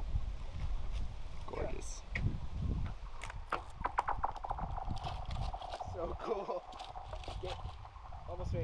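An object thrown onto frozen lake ice, skittering and spinning across it. About three seconds in there is a run of quick ticks over a faint ringing tone that dies away after about three seconds.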